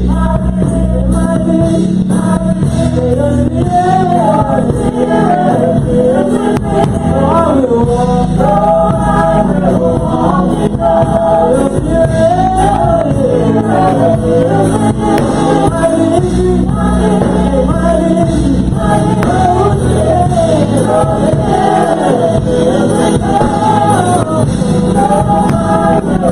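Gospel praise team of male and female singers singing together into microphones, the melody moving in long, flowing phrases.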